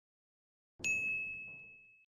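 A single high, bell-like ding: a title-card sound effect. It strikes about a second in after dead silence and fades away over about a second.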